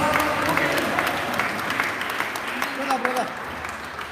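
Congregation clapping, a round of applause that slowly fades away.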